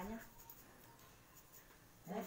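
A woman's voice finishes a word, then near silence: quiet room tone with a few faint ticks.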